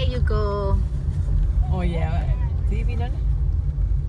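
Steady low rumble of a car's road and engine noise heard from inside the cabin while driving, under Thai speech.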